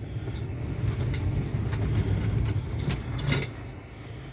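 Car engine running, heard from inside the cabin, with a low rumble that grows louder for about three and a half seconds and then settles back to a steady idle hum.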